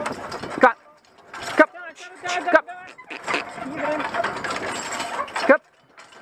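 A driver's short voice calls to a driving pony, over the rattle of a light metal marathon carriage as it is driven through an obstacle.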